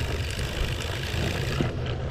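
Push broadcast spreader rolling across a lawn on its knobby pneumatic tyres, its wheel-driven spinner turning: a steady mechanical whir and rattle over a low rumble.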